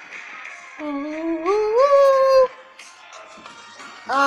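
Male voice singing one held, wordless note that climbs in steps, starting about a second in and stopping about halfway through.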